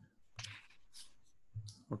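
Faint clicks and short hissy rustles on an open call microphone, with a sharp click at the start; a man starts speaking at the very end.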